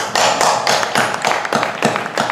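A congregation clapping in welcome, starting suddenly with quick, uneven claps.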